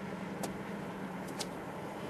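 Steady low background hum with a faint even noise behind it, broken by a few brief faint ticks.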